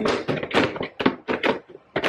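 Hollow plastic stackable gift-box decor pieces knocking and tapping together in a quick series as the top box is pressed down to lock into the one below.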